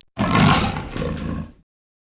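Big-cat roar sound effect that starts just after the opening and fades out about a second and a half in.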